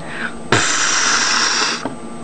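A hissing whoosh that starts suddenly about half a second in and lasts just over a second before fading, made as the toy robot figure is whisked out of shot for its exit.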